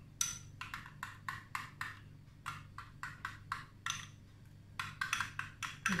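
Spoon clinking against a small glass bowl while stirring tomato paste into water: a quick run of light taps, about three or four a second, with a short pause a little past the middle.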